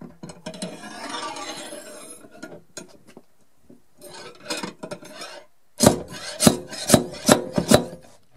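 The slide hammer of a paintless dent repair kit, attached to a tab glued on a car body panel. At first there is scraping and rubbing as the tool is fitted and handled. In the last two seconds the weight knocks against its stop in a quick run of six or seven sharp metallic knocks, about three a second, pulling on the glued tab to draw out the dent.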